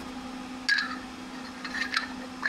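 Black aluminum mounting profiles for a cinema 3D system being pulled out of foam packing and rubbed against each other: two short scraping sounds, one just under a second in and one near the end, over a steady low hum.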